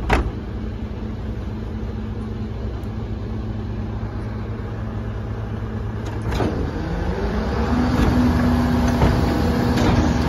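Refuse collection truck's engine running with a steady hum, with a sharp knock at the very start. About six seconds in the pitch dips and then rises into a higher steady whine and the sound grows louder, as the truck's hydraulic bin lift starts up to raise a four-wheeled wheelie bin.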